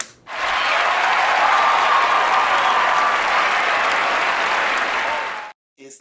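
Crowd applause, a dense even clapping that starts suddenly and cuts off abruptly about five and a half seconds in, like an added sound effect.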